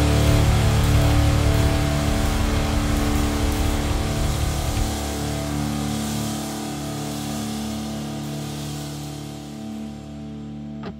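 The closing held chord of a heavy prog-rock song, with guitar and bass ringing out and slowly fading. The lowest bass notes stop about five seconds in.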